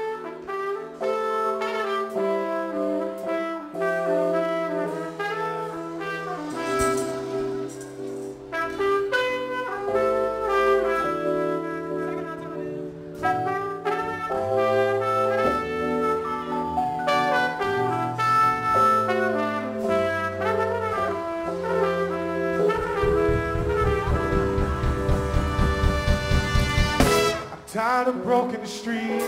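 Live trumpet solo over a soul band's groove of bass, keys and drums. Near the end, rapid drum hits build up into the next section.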